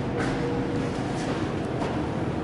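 ThyssenKrupp hydraulic elevator car travelling in its hoistway: a steady ride hum and rumble, with a faint steady tone in the first second.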